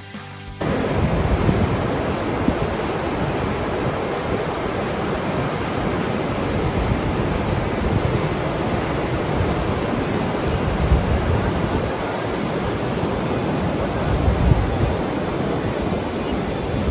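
Ocean surf on a beach: a steady, continuous rush of waves breaking, starting about half a second in.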